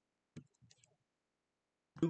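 Near silence: room tone with a few faint, short clicks in the first second.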